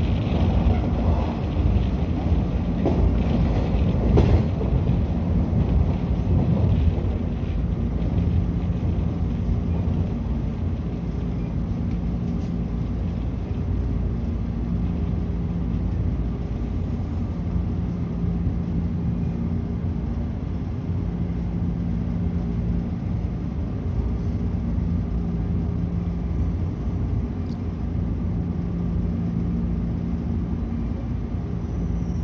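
Cabin sound of a 113 series electric local train running on the rails and drawing into a station: a steady low rumble of wheels and running gear, a little louder for the first several seconds, with a low hum that fades in and out every few seconds.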